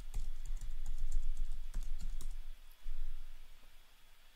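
Typing on a computer keyboard: a quick run of key presses, a brief pause, then a few more keys about three seconds in.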